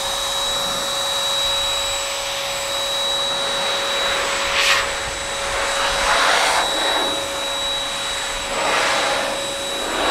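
Chemical Guys ProBlow handheld car dryer's 1000-watt electric motor running at full speed: a steady high whine over a rush of blowing air. The air noise swells now and then as the nozzle sweeps over the wet paint.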